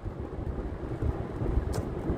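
Low, steady rumble of a car in motion heard from inside the cabin, with one short click near the end.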